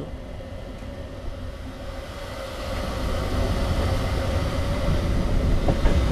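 Train sound effect: the steady rumble of a railway train running, growing louder through the second half.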